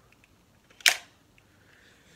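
A single sharp plastic click a little under a second in, preceded by a faint tick: Lego pieces of a brick-built rifle model snapping or knocking together as it is handled.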